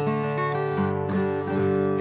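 Recording King acoustic guitar with a solid mahogany body, chords picked and strummed with the notes ringing on, moving to a new chord every half second or so.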